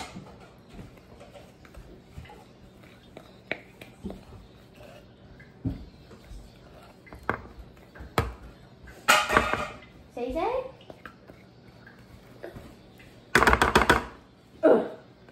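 Spatula scraping brownie batter out of a mixing bowl into a metal baking pan, with scattered sharp knocks of utensil and bowl against the pan and two louder noisy bursts, one about nine seconds in and one near the end.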